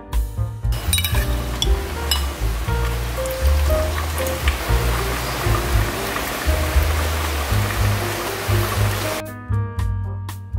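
Hot broth poured from a metal ladle into a small bowl over a raw egg: a steady splashing pour that stops shortly before the end, with a few clinks of the ladle against the bowl near the start, over background music.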